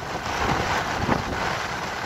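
Strong gusting wind buffeting the microphone in a steady rough rumble, over the hiss of surf breaking on the beach.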